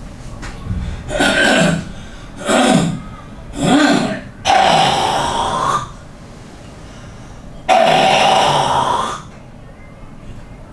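A man's loud, breathy vocal exhalations and groans, with no words, five in all. The first three are short, and the fourth and fifth each last over a second.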